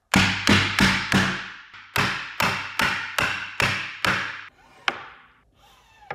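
A wooden dovetail joint being knocked together: about ten sharp wooden knocks, each ringing briefly, four in quick succession and then a steadier run of six. A single sharp click follows near the end.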